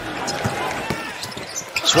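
A basketball being dribbled on a hardwood arena court, a few bounces over the general noise of the arena crowd.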